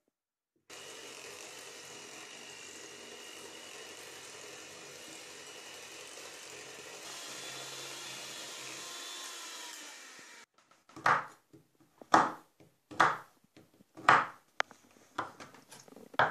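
Electric hand mixer running steadily, its beaters whisking a thick cream in a steel bowl. It stops about ten seconds in, and a large knife then chops a bar of dark chocolate on a wooden board, with a sharp chop roughly once a second.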